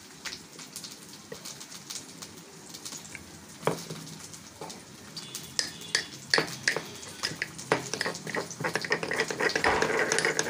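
Metal pestle stirring and knocking inside a small metal mortar, working ground spices and liquid into a wet paste, with sharp clicks that come faster and louder in the second half. A steady sizzle of frying oil runs underneath.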